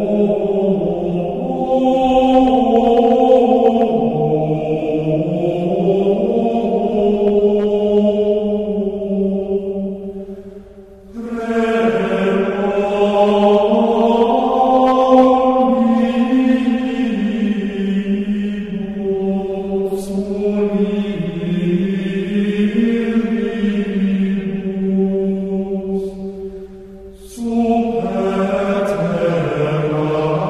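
Gregorian chant: voices singing slow plainchant in long, gliding phrases, with short breaks between phrases about 11 seconds in and again near 27 seconds.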